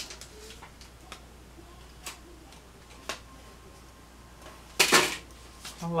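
Quiet handling of a plastic clay cutter and paper sheet, with a few light clicks and taps as the cutter is lifted off the cut polymer clay. A loud brief burst of noise about five seconds in, then a short spoken word at the end.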